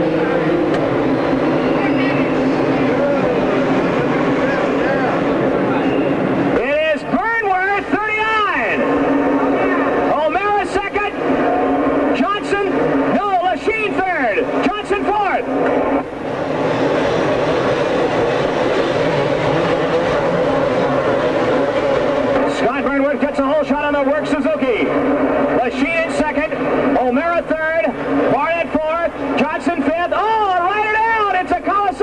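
A field of motocross bikes racing together, many engines overlapping. A steady high-revving drone at the start gives way to engine notes that repeatedly rise and fall as the riders work the throttle.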